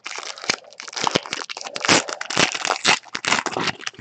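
A foil football trading-card pack wrapper being torn open and crinkled by hand, a dense run of sharp crackles.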